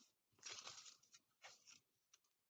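Faint rustling of paper strips being curled by hand: a short rustle about half a second in and a second, briefer one near one and a half seconds, with a small click between.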